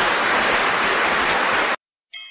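Steady hiss like static or white noise, which cuts off suddenly near the end.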